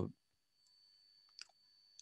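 Near silence with a faint steady high tone, broken by one short faint click about one and a half seconds in.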